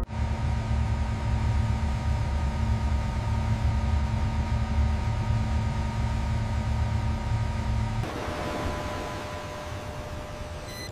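Steady low rumble and hum with a few held tones, like machinery running. About eight seconds in the deep rumble drops away, leaving a thinner hiss with a faint steady tone.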